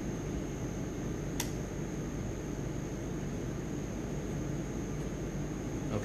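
Steady hum and hiss of room background noise, like a fan or air-conditioning, with a faint high-pitched whine throughout and a single faint click about a second and a half in.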